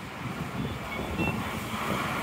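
Street traffic noise from vehicles on the road alongside, a steady rush that grows a little louder toward the end.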